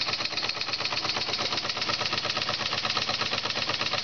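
Large model steam engine running fast and steady, its rapid exhaust beats making an even chuffing rhythm, while it belt-drives a small generator. The boiler is holding at 15 psi and the governor is not connected, so the engine runs at whatever speed the steam gives it.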